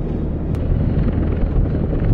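AH-64 Apache and AH-1 Cobra attack helicopters in flight: a loud, steady, low rotor and engine rumble.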